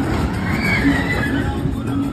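A brief high-pitched cry of a voice, rising then falling, about half a second in, over steady outdoor background noise and a faint recurring hum.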